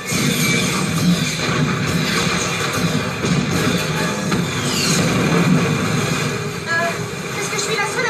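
Action-film soundtrack played through a television: loud music over dense battle effects, with fire and rushing water on screen.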